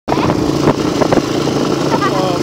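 Honda XR200R single-cylinder four-stroke dirt bike engine running at a steady pitch while riding.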